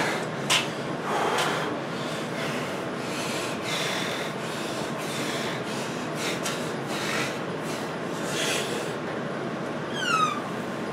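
Steady background hiss with faint rubbing and handling noises from a freshly bent steel bar being held and turned, and a single sharp click about half a second in.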